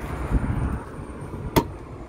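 Low, uneven rumble of wind and handling noise on a handheld phone microphone, with one sharp click about one and a half seconds in.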